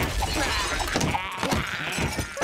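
Cartoon characters wailing and yelling in wavering, wordless voices over a busy sound-effect track, with a couple of sharp knocks.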